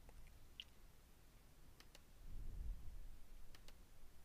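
A few faint computer mouse clicks, about two seconds in and again near the end, over quiet room tone.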